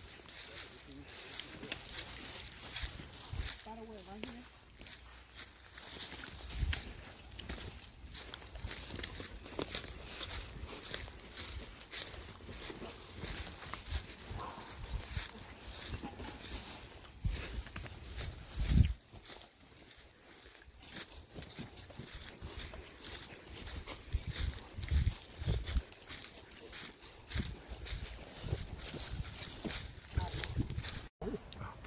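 Footsteps crunching through dry leaf litter and undergrowth, with brush rustling as people walk single file, and irregular low thumps, the strongest about 19 seconds in.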